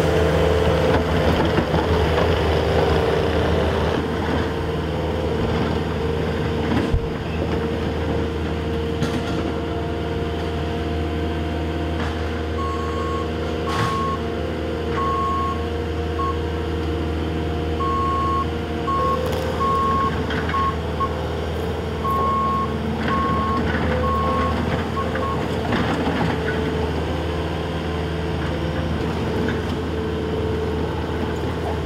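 Bobcat compact track loader's diesel engine running steadily. About twelve seconds in, a reversing alarm starts beeping about once a second, in three runs with short breaks, and stops near 25 seconds.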